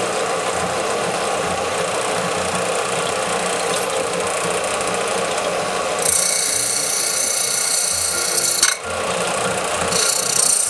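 Benchtop belt-and-disc sander running with a small nickel arrowhead held against the abrasive to sharpen and shine it. There is a steady grinding rasp, turning into a harsher, louder hiss about six seconds in, which breaks off briefly near nine seconds.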